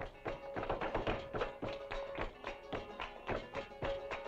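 Flamenco music: guitars playing under a held note, with sharp rhythmic percussive taps about four a second.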